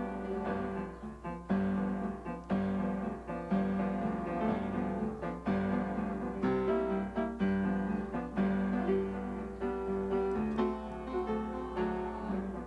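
Upright piano played with both hands: a running pattern of struck chords and held notes.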